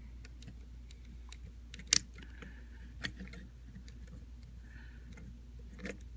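Small screwdriver driving a screw into a plastic action-figure head, with faint scattered clicks and scrapes of plastic parts being handled and a sharper click about two seconds in.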